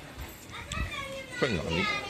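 Voices of people nearby, including a high-pitched child's voice through the second half and a short, lower voice with a falling pitch.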